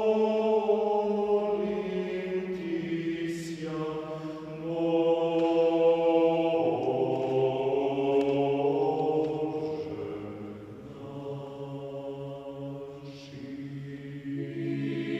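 Orthodox church choir chanting slowly, the voices holding long sustained chords that shift every few seconds. It grows quieter in the last few seconds.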